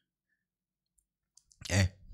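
Dead silence for about a second and a half, then a short spoken syllable near the end.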